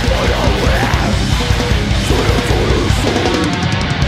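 A heavy metal band playing live: distorted electric guitars and bass over a pounding drum kit, heard as a multitrack board mix. Near the end the low end briefly drops away under a quick run of drum hits before the full band comes back in.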